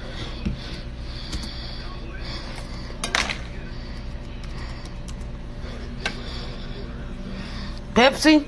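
Light handling clicks and one louder knock about three seconds in, over a steady low hum.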